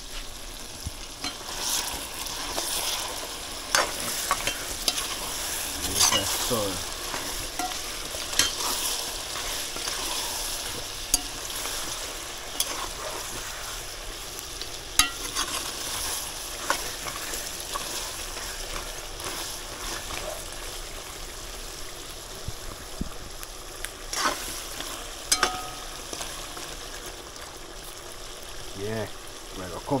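Curry chicken back sizzling in a metal pot as a metal spoon stirs it, with sharp clicks and knocks of the spoon against the pot every second or two.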